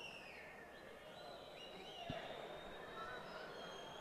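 A quiet lull in the boxing-venue background: faint murmur with a few faint, distant voices, and a single soft click about two seconds in.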